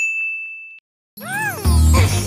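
A single bright ding sound effect on one high pitch, fading out within about a second. After a short gap there is a rising-and-falling swooping sound, and upbeat background music with a steady bass comes in over the second half.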